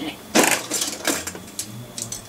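A short laugh, then small die-cast toy cars clinking and rattling as a hand rummages among them in a cardboard box, in a few quick bursts.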